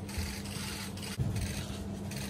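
Rubbing and scraping handling noise on a hand-held phone's microphone, over a steady low hum.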